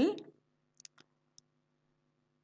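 A spatula stirring flour and water into dough in a glass mixing bowl, giving a few faint ticks against the glass about a second in.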